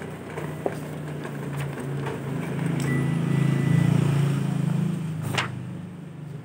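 Ricoh MP 8001 office copier running a two-sided copy job. Its feed and drive mechanism gives a steady low hum that swells over a few seconds and then eases, with a few clicks early on and one sharp swish near the end as paper moves through.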